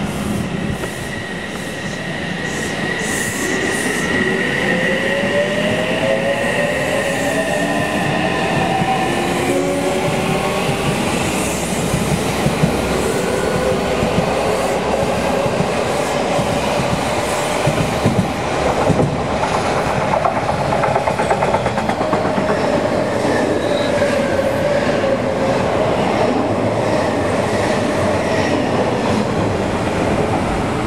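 Odakyu 50000 series VSE Romancecar and a commuter train passing each other on neighbouring tracks: the rumble of wheels on rail, with clicks over the rail joints about halfway through, and electric motor whine gliding up and down in pitch.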